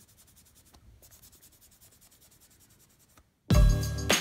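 Faint, rapid rubbing of a cleanser-soaked wipe over gel-polished nails and fingertips, taking off the sticky layer and leftover stamping polish. About three and a half seconds in, after a brief gap, loud background music starts.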